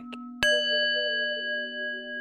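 A small metal bell is struck once about half a second in and rings on with several high overtones over a steady low drone. It marks the close of a guided meditation, calling the listener back.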